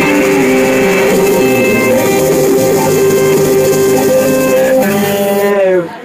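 Live psychedelic rock band, with electric guitars and bass, holding sustained chords. Near the end the held notes bend downward in pitch, and the music drops off suddenly, leaving a much quieter tail.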